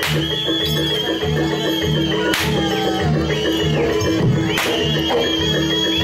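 Traditional Indonesian folk-performance music, with a high sustained melody line over a steady drum rhythm. Three sharp loud whip cracks cut through it about two seconds apart.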